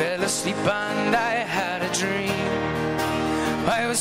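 A man singing to his own strummed acoustic guitar, with held notes that waver in a vibrato.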